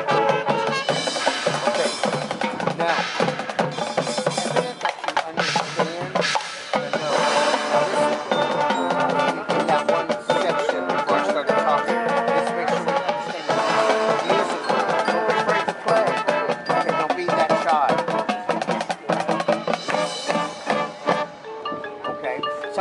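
High school marching band playing its field show: sustained brass chords over dense drum and percussion hits.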